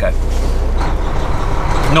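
Semi truck's diesel engine running with a steady low hum, heard from inside the cab, with a rise of road and air noise over the second half.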